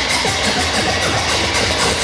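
Live hip-hop DJ set, mixed from turntables and played loud through a venue's PA: a steady beat-driven track.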